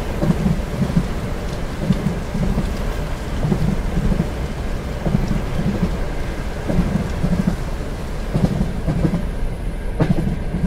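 Passenger train running on jointed rail: a steady low rumble with a double clack of wheels over the rail joints about every second and a half, under a steady hiss of rain on the carriage.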